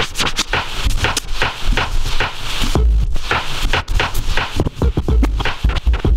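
Turntablist battle routine played live on two turntables and a mixer: record sounds chopped and cut in and out in quick, short stabs over heavy bass hits that come every second or two.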